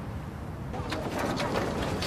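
Birds calling over a low, steady background rumble; the calls come in short, repeated bursts starting a little under a second in.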